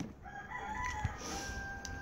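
A rooster crowing faintly: one long drawn-out crow that holds a steady pitch.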